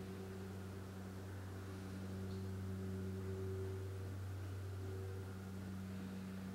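Steady low hum with a few held tones and a faint hiss in a quiet room.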